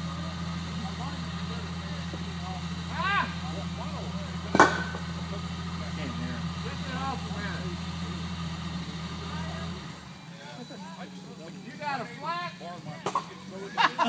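Jeep Cherokee engine idling steadily, then shut off about ten seconds in. A single sharp knock stands out a little before halfway, with faint voices in the background.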